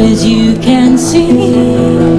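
Nylon-string acoustic guitar played live, chords strummed and left ringing, in a tropical rock song.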